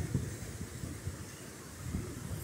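Low, steady rushing of a rain-swollen creek as it runs fast over rocks.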